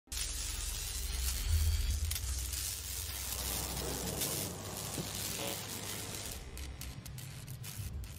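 Logo-intro sound effect: hissing noise over a deep bass rumble that swells within the first two seconds, then thins out, with scattered crackles near the end as it begins to fade.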